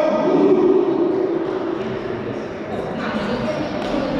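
Men's voices shouting and calling out, echoing in a large sports hall, loudest in the first two seconds.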